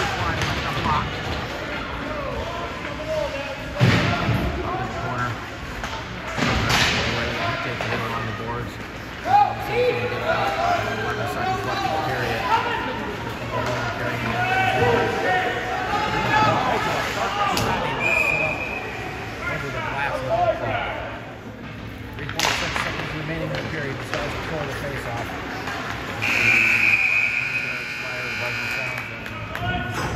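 Ice hockey rink play: sticks and puck give several sharp bangs in the first ten seconds, with voices calling out. About three and a half seconds before the end, a scoreboard horn sounds for a few seconds, the signal for the end of the period.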